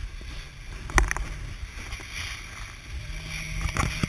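Kiteboard riding across choppy sea: a steady low rumble of water and wind on the camera, broken by sharp knocks about a second in and again near the end as the board hits the chop.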